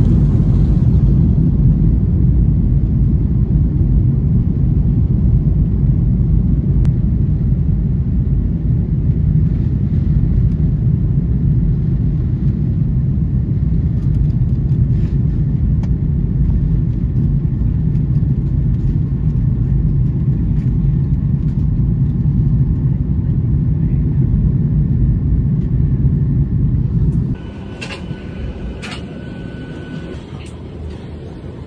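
Passenger jet cabin noise heard at a window seat: a loud, steady low rumble of engines and airflow as the airliner lands and taxis. Near the end it drops suddenly to a quieter cabin hum with a few light clicks.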